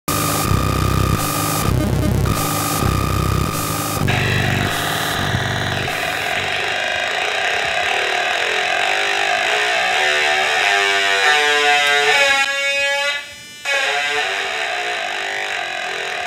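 Hand-built Atari Punk Console synth making harsh, buzzy electronic tones: a pulsing stepped rhythm for the first few seconds, then a dense buzzing drone whose pitch shifts as its knobs are turned, cutting out briefly near the end.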